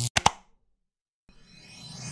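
Logo-animation sound effects: two quick pops right at the start, then about a second of dead silence, then a swelling whoosh with sweeping tones that rises in loudness as the outro music sting begins.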